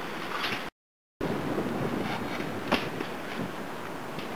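Outdoor wind noise on the camera microphone, with faint small ticks. It breaks off into total silence for half a second at a cut about a second in, and there is a single light click a little before three seconds.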